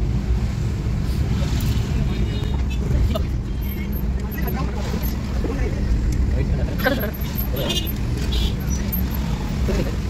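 Steady low rumble of a Mitsubishi car's engine and tyres heard from inside the cabin while driving through slow city traffic, with snatches of voices over it.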